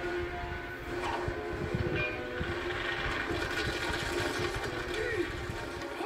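Animated-film trailer soundtrack played from a VHS tape through a TV speaker: a steady held note over a low rumble of action effects, with snatches of voices.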